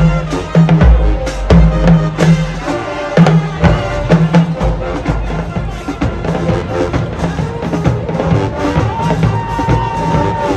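A high school marching band playing brass and percussion, with sousaphones and a drumline. Heavy bass-drum hits drive the first half, then the music drops a little in level and ends on a long held note.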